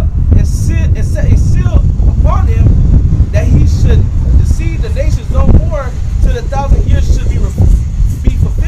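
Men's voices speaking, too unclear for the recogniser to catch, over a steady heavy low rumble.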